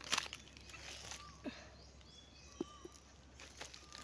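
Dry leaf litter and undergrowth crackling in a few short bursts as someone moves and crouches over it, with a few short, faint bird chirps between them.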